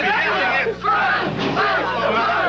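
A crowd of several people shouting and talking over one another, loud and overlapping, with a brief lull just before the one-second mark. A steady low hum runs underneath.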